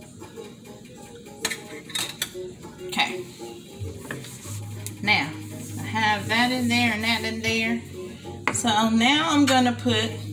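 A spoon clinks and scrapes a few times against a glass dish. From about halfway, a singing voice with music comes in and grows louder toward the end.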